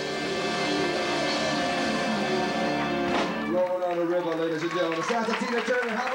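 A live band's rock number ends on a long held final chord. About three and a half seconds in, it gives way to audience applause with voices over it.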